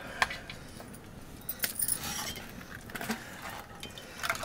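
Steel ladle knocking against stainless-steel bowls and a metal pot as curry is served, giving a few sharp metallic clinks. The loudest comes just after the start and a cluster follows about halfway through.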